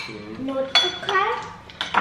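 Metal spoons clinking against ceramic bowls while people eat from them, a few sharp clinks spread across the moment.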